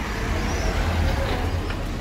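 Street ambience: a steady low rumble, with a few short, high bird chirps on top.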